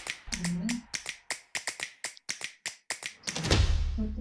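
A run of about a dozen sharp, unevenly spaced clicks in a break in a promotional video's soundtrack. A brief low rising tone sounds about half a second in. A low swell near the end leads back into the music.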